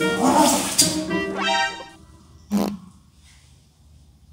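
Playful background music under a man's drawn-out groan, both stopping about two seconds in. Half a second later comes one short, loud fart.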